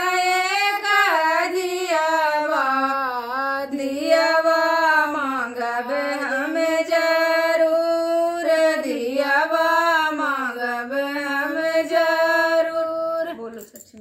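Two women singing a traditional Chhath folk song together in unison, unaccompanied, in long held, slowly bending notes. The singing stops about half a second before the end.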